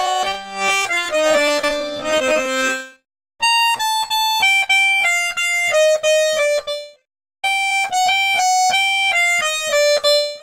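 Accordion loops: short melodic phrases of separate notes, one after another. Each phrase breaks off into about half a second of silence before the next begins, once about three seconds in and again about seven seconds in.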